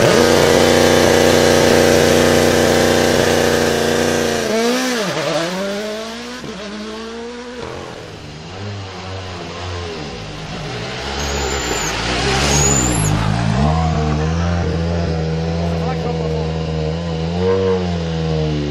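Turbocharged four-cylinder Rally1 hybrid engines at a stage start. First the Toyota GR Yaris Rally1 holds a steady high idle, then its revs dip and swoop with blips. Then the Hyundai i20 N Rally1 idles lower, with a few short rev blips.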